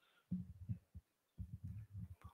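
A few faint, irregular low thumps and rumbles of a handheld microphone being handled.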